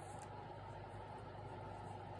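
Quiet room tone: a faint, steady hiss with a low hum and no distinct sounds.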